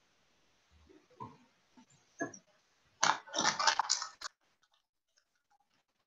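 A loud burst of rustling, crackling noise starting about halfway in and lasting just over a second, with a few faint clicks before and after it.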